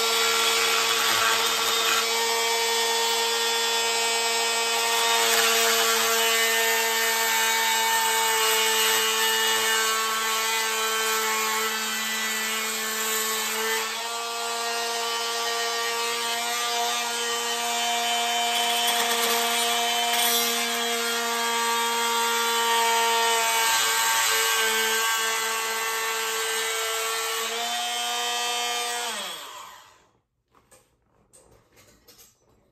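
Dremel multi-tool running steadily as it cuts a slot through a trail camera's plastic door, its pitch wavering slightly as it bites. Just before the end it is switched off and its pitch falls as it winds down.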